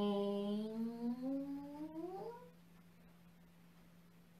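A woman's voice holding one long vocal tone for about two and a half seconds, low and steady at first, then rising in pitch before it stops. It is a voiced breath in a tai chi breathing exercise, made as she rises from a forward bend. A faint steady hum runs underneath.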